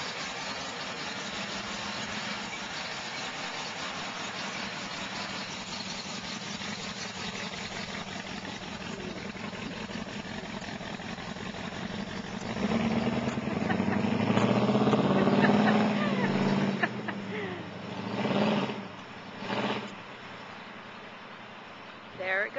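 A 1964 Chevrolet truck's engine, fitted in a bare cab-and-chassis with no hood or bed, runs at low speed as the truck rolls by. About halfway through it gets much louder as the truck pulls away down the street, then comes two shorter swells before it fades with distance.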